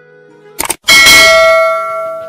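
A quick double click, then a bright bell ding just under a second in that rings on and fades over about a second and a half: the click-and-bell sound effect of a subscribe animation. Faint music plays underneath.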